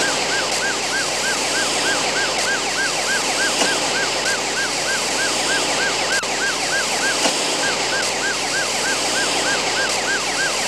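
A high warbling tone that rises and falls about three times a second, with a brief break about seven and a half seconds in, over a loud, steady hiss.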